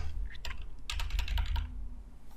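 Computer keyboard typing: a few scattered keystrokes.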